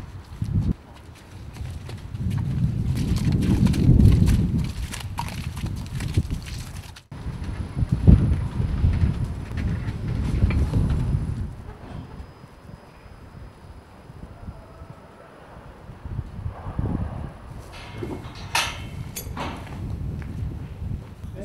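A horse moving about, its hooves on the ground, over heavy low rumbling noise, with a few sharp knocks near the end.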